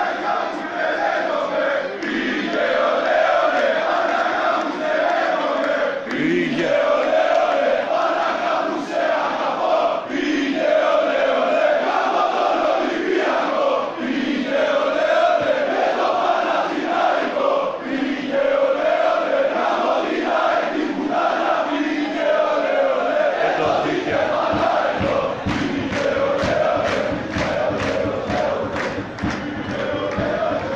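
Football supporters in the stands chanting together in repeated phrases. About three-quarters of the way through, a steady rhythmic beat of about two to three strokes a second joins the chant.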